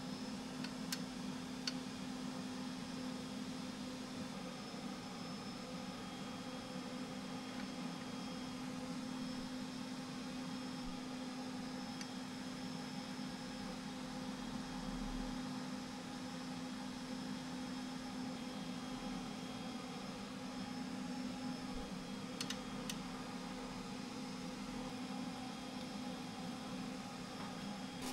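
Steady hum of a DLP cinema projector's cooling fans, a low tone with fainter higher whines over a noise floor, with a few faint clicks from handling the filter mount.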